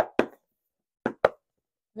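Four short knocks in two pairs about a second apart, from the deck's hard cardboard box being handled.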